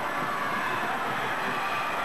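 Live sound of an indoor inline speed skating race: a steady rolling rumble of skate wheels on the wooden floor under the many overlapping voices of the crowd.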